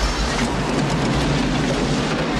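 Film sound effects of a car crash: a loud, steady rush of spraying water and debris, with scattered small clattering impacts.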